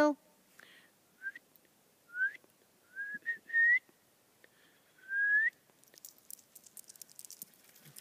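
A person whistling to call a dog: several short, clear whistles that slide upward in pitch, spread over the first five and a half seconds, some in a quick run of three.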